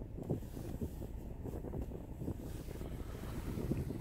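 Wind buffeting a phone's microphone: a low, uneven rumble.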